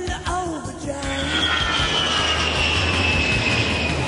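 Jet aircraft flyby: a rumble with a high whine that comes in about a second in and slowly falls in pitch as the plane passes, over music.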